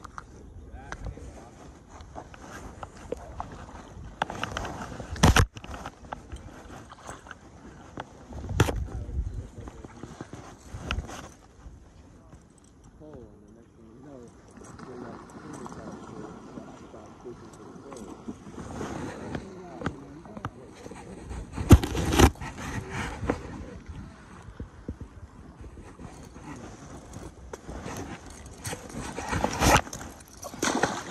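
Close handling noise: rustling with several sharp knocks, the loudest a little past the middle, as a caught trout is unhooked and handled on a stringer, with muffled voices under it.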